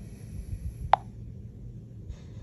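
A single short, sharp click about a second in as a fingertip taps the update button on a handheld player's touchscreen, over a faint low hum.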